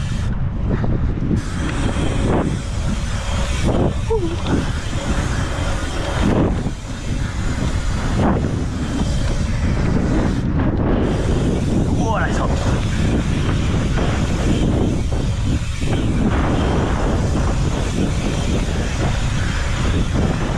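Strong wind buffeting the camera's microphone, a dense low rumble, over bicycle tyres rolling on an asphalt pump track.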